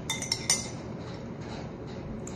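Metal spoon clinking against a nearly empty bowl several times in quick succession in the first half second, as the last of the soup is scooped up.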